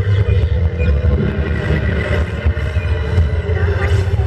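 Loud live-concert sound before the singing starts: a deep, steady rumble from the stage sound system with the crowd's voices shouting over it.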